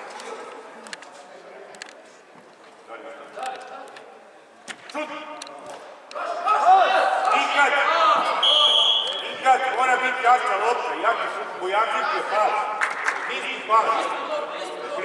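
Players and a coach shouting across a youth indoor football match in a large air-dome hall, the calls growing louder from about halfway through, with sharp knocks of the ball being kicked. A short high whistle-like tone sounds once, a little past halfway.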